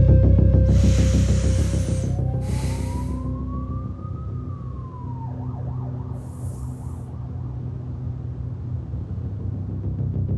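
Dark, atmospheric film score: a low drone that fades down over the first few seconds, a few short airy swishes, and a single tone that slowly rises and then falls away.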